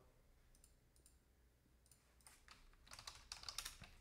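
Faint computer keyboard typing: a few scattered keystrokes, then a quicker run of them in the second half.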